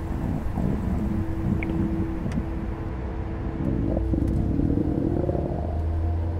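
A stomach growling: a long, wavering rumble, over the low steady hum of a car's engine.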